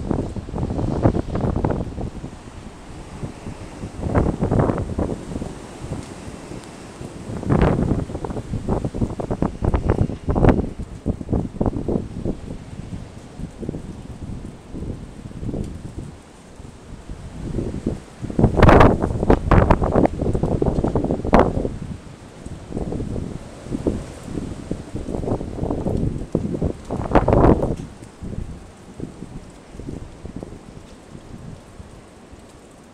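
Powerful storm wind gusting and buffeting the microphone in irregular loud blasts, with the strongest, longest gust about two-thirds of the way through.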